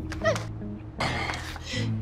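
Background music with a steady low line, broken by a brief, high, falling whimper from a distressed woman about a quarter second in, then a burst of hissing noise from about a second in.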